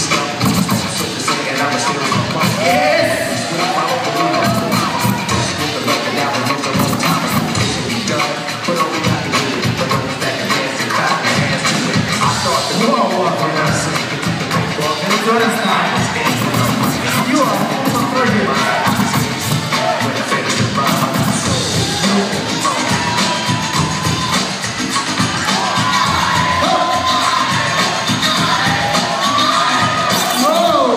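Music playing over loudspeakers, mixed with a crowd of children cheering and shouting throughout.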